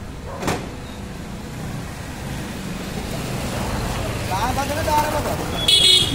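A motor vehicle on the road passing, its low rumble building over a few seconds. A metal clank about half a second in comes from the iron gate's latch being worked, and a short high squeal sounds near the end.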